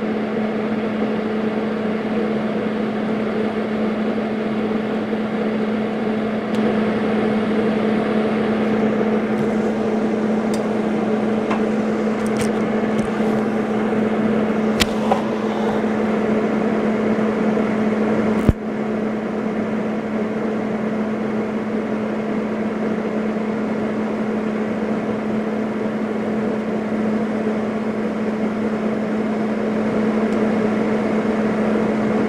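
TIG welding arc on a steel socket from a Lincoln TIG 200: a steady buzzing hum with a few faint clicks and one sharp click about eighteen seconds in.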